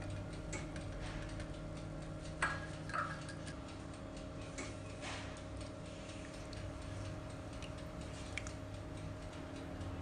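Silicone whisk and spatula stirring custard in a non-stick saucepan, giving irregular light ticks and taps against the pan, with a few louder clicks about two and a half, three and five seconds in, over a steady low hum.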